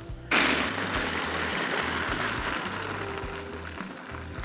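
Wood smoking pellets poured from a cardboard box into a pellet smoker's hopper: a dense, rattling pour that starts about a third of a second in and slowly thins out. Background music plays underneath.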